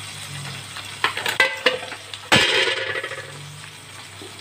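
Whole duck sizzling as it sears in the fat of a large aluminium pot, being browned before water is added. A few light clicks and one sharp knock about two seconds in come from handling around the pot.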